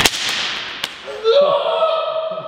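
A stretched rubber resistance band let go and snapping against a person's body: one sharp crack, followed about a second later by a long, drawn-out cry of pain.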